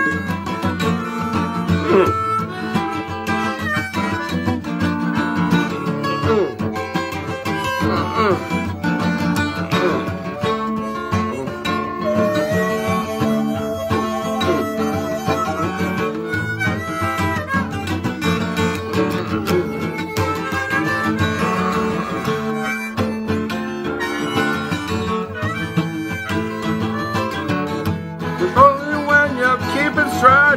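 Instrumental blues break: a harmonica plays held and bent notes over a steadily picked acoustic guitar.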